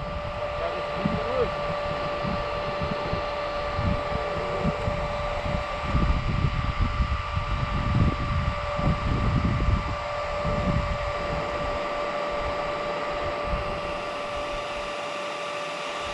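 Wind buffeting the microphone in uneven gusts of low rumble, strongest in the middle, over a steady high-pitched whine.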